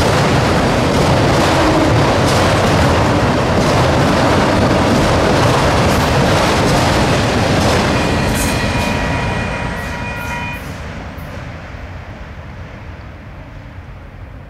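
Freight train of autorack cars rolling past, its wheels clicking over rail joints. The rumble fades away after the last car clears, about eight to ten seconds in.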